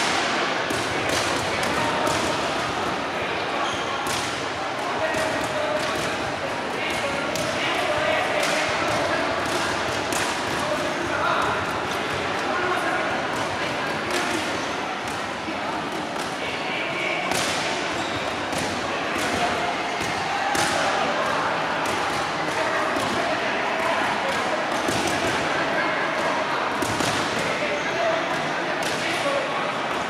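Boxing gloves smacking coaches' focus mitts in irregular runs of sharp hits, from several pairs working at once. Under them runs a steady murmur of crowd voices in a large sports hall.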